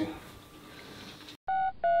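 Mobile phone keypad beeps as a number is dialled: two short, even electronic tones about a third of a second apart, near the end.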